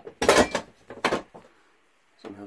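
Hinged sheet-metal cover of a pull-out electrical disconnect box being swung open: a loud rattling clank about a quarter-second in and a second, shorter clank about a second in.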